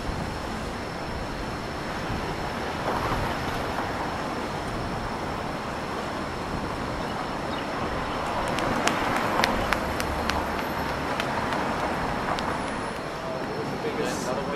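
City road traffic at a busy intersection: a steady wash of car and tyre noise, growing louder in the second half, with a cluster of sharp clicks about nine to ten seconds in.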